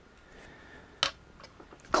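One sharp plastic click about a second in: a small cooling fan snapping into its clip mount in a black plastic Raspberry Pi 4 case lid. Faint handling of the plastic parts is heard around it.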